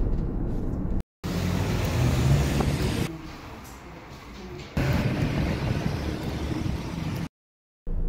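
Road and engine noise inside a moving van's cabin, cut into short clips: it breaks off into silence about a second in, drops to quieter room tone for a stretch in the middle, and cuts to silence again near the end.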